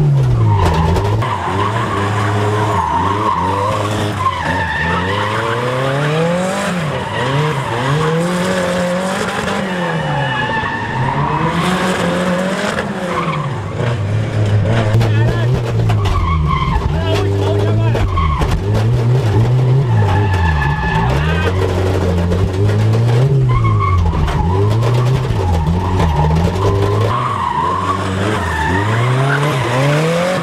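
Turbocharged AP-engined Chevrolet Chevette drift car heard from inside the cabin, its engine revving up and falling back again and again every second or two while the tyres squeal through the slides.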